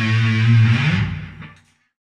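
Electric guitar picked with a solid titanium pick, a solo ending on a held low note that rings for about a second and then dies away to silence.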